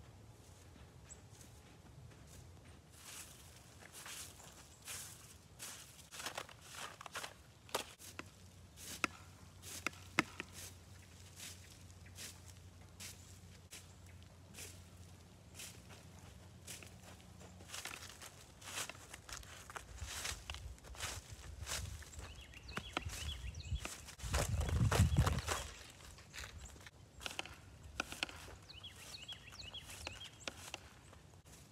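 Faint, irregular footsteps crunching on snow and frozen ground, with scattered short knocks. A low rumble swells for a couple of seconds near the end.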